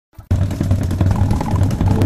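Loud intro sound effect for an animated logo: a dense, rumbling, engine-like sting that cuts in suddenly about a third of a second in, leading straight into the intro music.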